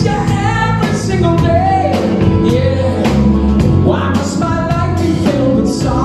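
Male lead vocalist singing live over a rock band, with a steady drum beat, bass guitar and keyboards, recorded from the audience.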